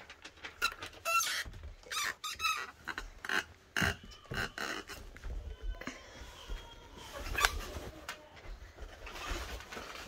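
Blankets rustling and rubbing against a handheld phone. A run of short sharp sounds, some with a brief high pitch, comes in the first four seconds, then a softer steady rustle with one sharp click about seven seconds in.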